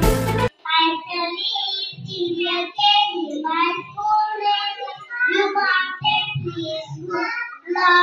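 Music stops abruptly about half a second in; then young girls sing into a microphone, holding some notes.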